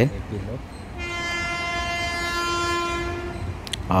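Train horn sounding one long, steady blast of nearly three seconds, starting about a second in.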